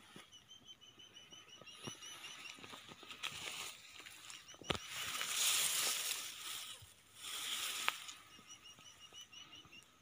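Grass and leaves rustling against the phone as it pushes through thick vegetation, loudest in two swells in the second half, with a couple of sharp snaps. Under it, a small animal's rapid, evenly repeated chirping call comes in runs, near the start and again near the end.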